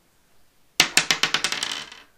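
A six-sided die thrown onto a wooden tabletop, rattling in a quick run of clicks as it bounces and tumbles to a stop, starting just under a second in.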